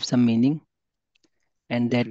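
A man's voice speaking, breaking off for about a second midway before talking again, with a faint tick or two in the pause.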